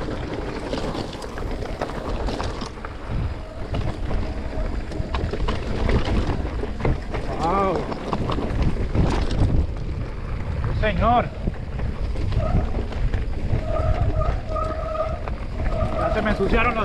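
Wind buffeting the camera microphone and the rumble and rattle of an e-mountain bike's tyres rolling over a loose, rocky dirt trail. A couple of brief pitched sounds come about seven and eleven seconds in, and a steady whine sets in for the last few seconds.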